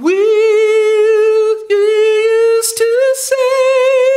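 A man singing a long, high note a cappella, held almost on one pitch with a gentle vibrato, briefly breaking twice and stepping slightly higher near the end: a demonstration of a sweet, light sung tone.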